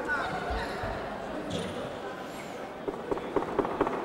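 Smacks of boxing gloves and boxers' feet on the ring canvas during an exchange: a quick run of five or six sharp smacks about three seconds in, over background voices in the hall.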